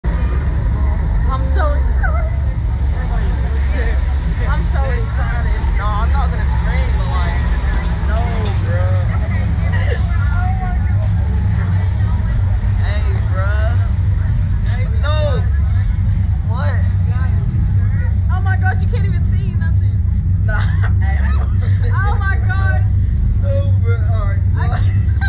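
People's voices chattering over a steady, loud low rumble.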